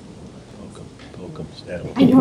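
Quiet room tone of a large hall with faint, indistinct voices murmuring and a few soft clicks.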